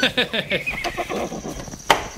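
A horse whinnying: a quavering neigh that fades away over most of two seconds. A single sharp click comes near the end.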